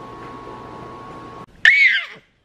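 A toddler's short, loud, high-pitched squeal that arches up and down in pitch, breaking in suddenly near the end after a faint steady hum.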